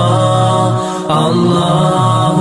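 Outro music of chanted vocals holding long notes, dipping briefly about a second in.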